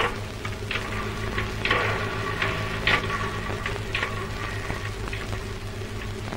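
Rotary telephone being dialled: scattered faint clicks over the hiss, crackle and steady low hum of an old film soundtrack.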